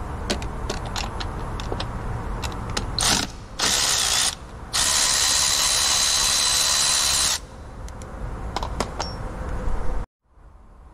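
Milwaukee cordless electric ratchet backing out a 10 mm bracket bolt in three runs: a short burst about three seconds in, a second of under a second, then a longer run of nearly three seconds with a steady whine. Light clicks of the tool and socket being handled come before and after.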